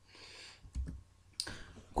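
A few faint clicks with a soft hiss between them, in a pause between spoken sentences; the sharpest click comes about one and a half seconds in.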